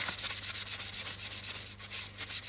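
Paper towel rubbed briskly over the primed plastic surface of a model aircraft, a quick run of scratchy rubbing strokes with a short lull near the end. It is buffing away the grainy texture of the dried primer to leave the surface smooth.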